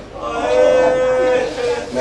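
A man's voice through a microphone holding one long, steady sung note for most of two seconds: the drawn-out lament of a zakir reciting at a majlis.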